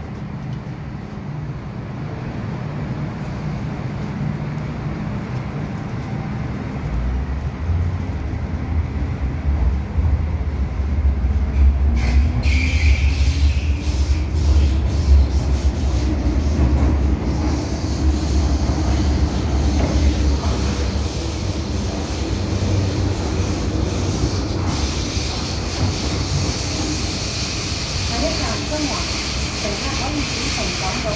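Interior sound of an MTR M-Train (Metro-Cammell electric multiple unit) pulling away and gathering speed underground. About a quarter of the way in a low rumble builds. A motor whine rising in pitch follows as the train accelerates, and then a steady hiss of wheels on rail in the tunnel.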